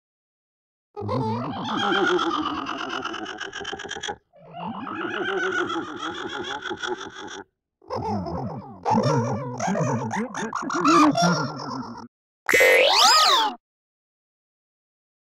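A string of cartoon sound effects separated by silent gaps: three long warbling, pitch-bending sounds, then a short one near the end that sweeps up and down in pitch.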